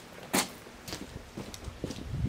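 Footsteps walking away across a rough concrete yard: a string of short knocks, the sharpest about a third of a second in.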